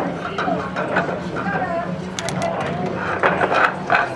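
Billiard balls clicking sharply against one another as they are gathered into a triangle rack, in clusters about two seconds in and again near the end. Voices chatter in the background over a steady low hum.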